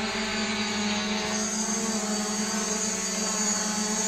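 DJI Mavic Pro quadcopter hovering in place, its propellers and motors giving a steady, even hum.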